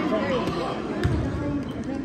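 Spectators talking in a gymnasium during a free throw, with a basketball bouncing on the hardwood court about a second in.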